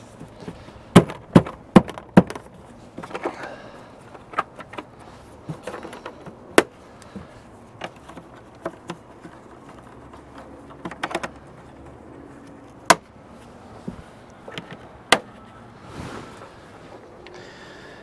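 Cover panels being fitted back onto a Bobcat skid steer's HVAC housing under the cab: scattered sharp clicks and knocks as the panels are handled and seated, a quick run of four in the first couple of seconds, then single knocks every few seconds.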